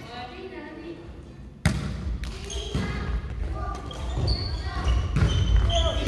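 Badminton rally on a wooden gym floor: sharp racket hits on the shuttlecock, sneaker squeaks and thudding footsteps, starting suddenly about a second and a half in. Voices are heard before it, and the hall echoes.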